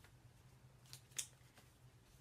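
Paper stickers handled between the fingers: two brief crisp rustles about a second in, the second louder, over near silence with a faint low hum.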